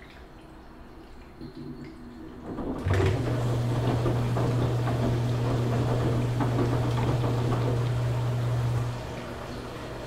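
Washing machine in its wash cycle: a few seconds of quiet water sloshing, then a steady low hum with rushing water starts about three seconds in and cuts off suddenly about nine seconds in.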